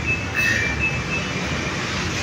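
Street traffic: a steady low engine rumble and hum, with a few thin, high-pitched squealing tones in the first second or so.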